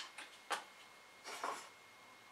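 Faint handling sounds on a wooden workbench as a bottle of wood glue is picked up to glue a small drawer: two light clicks in the first half second, then a short scuff at about a second and a half.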